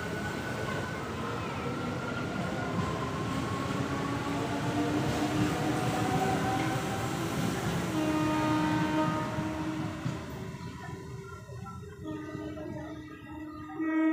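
A passenger train's coaches rolling past on the rails, a steady rumble with thin whining tones that slide slowly lower. The rumble fades about ten seconds in as the last coaches clear.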